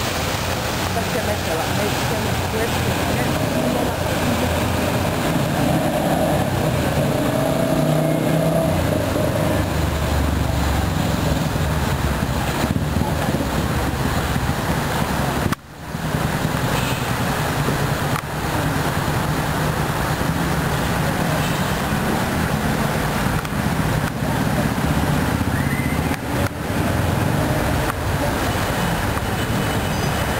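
Busy city street ambience: road traffic running and the indistinct voices of passers-by, with a momentary drop-out about halfway through.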